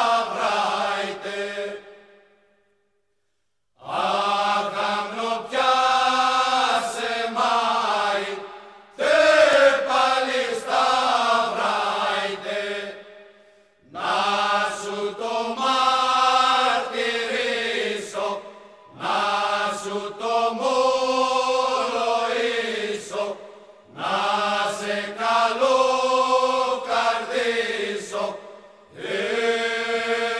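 Unaccompanied choir singing a Cretan rizitiko song, slow and drawn out, in long held phrases of a few seconds each with short pauses between them, and one brief silence about three seconds in.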